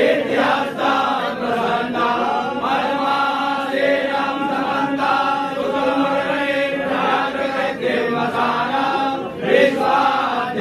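A group of men chanting Sanskrit mantras together in unison, continuously on a steady reciting pitch.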